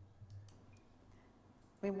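A near-quiet pause with a few faint, short clicks in its first half, then a woman's voice starts speaking just before the end.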